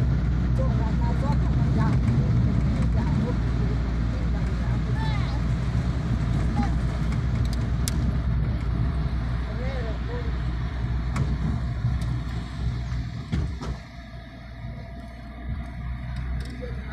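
Car engine and road noise heard from inside the cabin while driving on a winding hill road, a steady low rumble that eases off briefly near the end, with faint voices over it.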